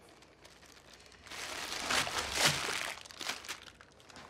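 A sheet of paper crinkling and rustling as hands press pie dough through it to lay the top crust. It builds from about a second in, is loudest around the middle, and trails off into a few crackles.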